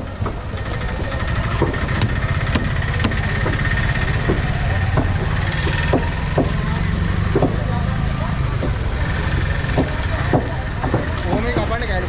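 A heavy curved knife cutting a bronze bream on a wooden chopping block, making short sharp knocks at irregular intervals, about one a second. Under it, a small engine idles steadily.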